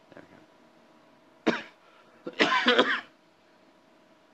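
A man coughing: one short cough about a second and a half in, then a louder, longer cough just under a second later.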